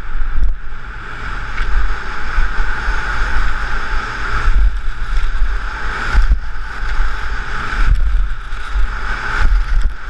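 Wind buffeting a helmet-mounted action camera's microphone at downhill speed, with the hiss of skis carving on hard-packed snow swelling and fading through the turns.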